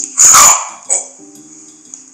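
A single loud dog bark, short and sharp, about a quarter-second in, set into a music track whose sustained low tones carry on after it.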